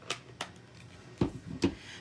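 Handmade cardstock cards being handled on a tabletop: a few light taps early on, then a couple of soft thumps a little past a second in as a card is picked up.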